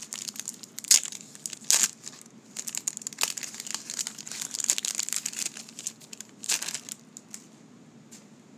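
Shiny wrapper of a 1990 Score football card pack crinkling and tearing as it is ripped open by hand, with sharper rips about a second in, just before two seconds and at about six and a half seconds. It goes quieter near the end as the cards come out.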